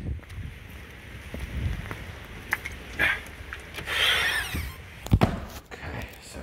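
Footsteps and handling noise from a person walking, then a door being passed through: a long rushing scrape about four seconds in and a heavy thud about a second later.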